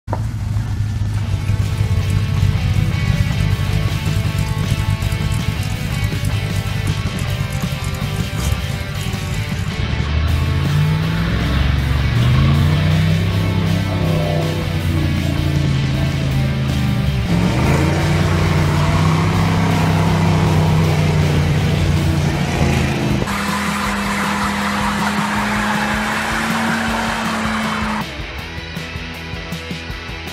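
Loud engine running, then revving, its pitch rising and falling repeatedly through the middle, mixed with music.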